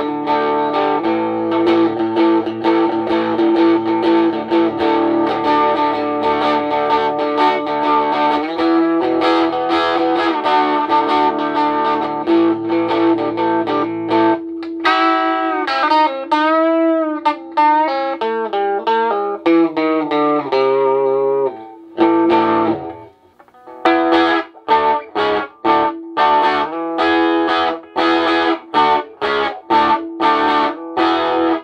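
Electric guitar played through a homemade 10-watt tube amp modelled on the Watkins Westminster. Sustained strummed chords fill the first half. Then comes a descending run of bent, wavering single notes, a brief pause, and choppy, short-struck chords near the end.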